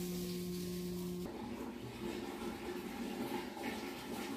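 A faint, steady low hum that cuts off abruptly about a second in, leaving faint uneven background noise.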